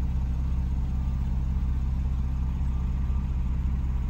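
A 2017 Porsche 911 Carrera S (991.2) twin-turbo 3.0-litre flat-six idling steadily with the sport exhaust switched on, heard from inside the cabin as a low, even hum.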